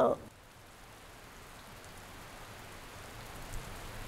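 Soft, steady rain, a patter with no tone in it, slowly growing louder.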